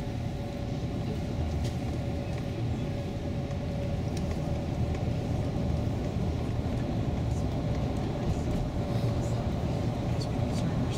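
Shuttle bus in motion, heard from inside the passenger cabin: a steady low rumble of engine and tyres on the road, with a thin steady hum above it.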